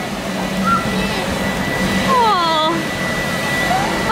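Background music with a high voice holding long notes that slide down in pitch, over a steady sustained tone.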